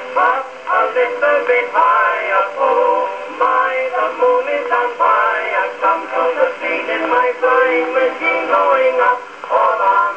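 A 1911 Victor disc record playing on a 1905 Victor Type II horn phonograph with an oak horn. The music is continuous, with a thin, narrow acoustic-era sound that has no deep bass and little treble.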